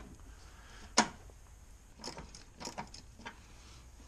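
A few scattered metallic clicks and taps of a socket wrench and extension being handled and fitted onto a bolt, the sharpest about a second in.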